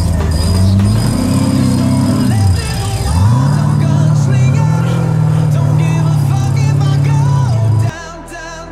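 Off-road rock-crawling buggy's engine revving hard under load. Its pitch dips and rises over the first three seconds, is then held high and steady, and cuts off suddenly near the end. Music plays underneath.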